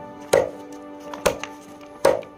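Meat cleaver chopping raw chicken on a thick wooden board: two sharp chops about a second apart, over background music.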